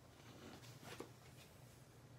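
Near silence: faint rustling of a card being handled, with a light tap about a second in.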